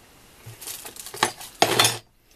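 Metal parts of a mini milling machine being handled: a few light clinks, then a louder metallic rattle near the end.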